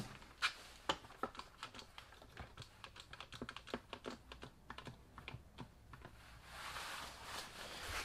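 Quick-Grip one-handed bar clamp being pumped tight on a plastic tail light housing: a run of light, irregular ratchet clicks from the trigger, with a soft rustle near the end.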